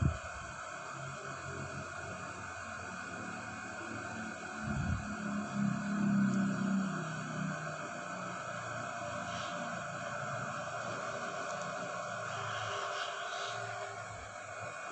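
Soft handling sounds and a dull thump about five seconds in as rolled paratha dough is laid onto a flat iron tawa and patted down, over a steady hiss.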